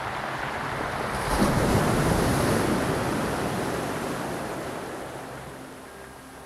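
Sea waves breaking on a pebble and rock shore: one wave swells to a peak about a second and a half in with a bright hiss, then fades slowly as the water washes back.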